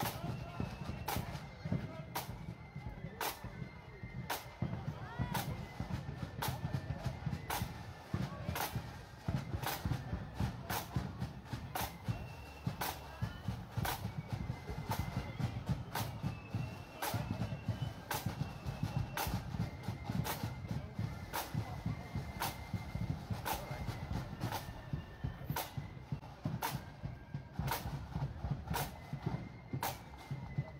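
Parade band music: a drum strikes about once a second, with faint short high notes of a melody over it and a steady low rumble of street noise.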